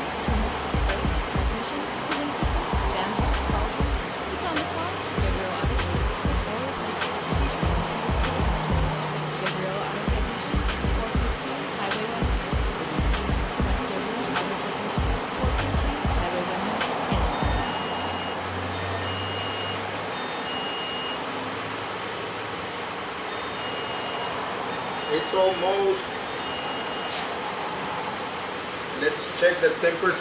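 Background music with a low, irregular beat, laid over the steady noise of the 2008 Ford Edge's 3.5-litre V6 idling as it warms up with the thermostat not yet open. Short repeated high tones come in the second half.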